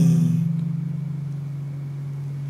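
A man's low, steady hum, a drawn-out held vowel between phrases, trailing on from his speech and fading slowly.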